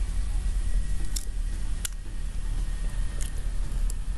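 Dry tamarind pods being cracked and peeled by hand: four short, crisp snaps of brittle shell over a steady low rumble.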